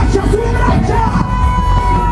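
Live rock band playing loudly with electric guitar, a high note held steady for about a second from about halfway through.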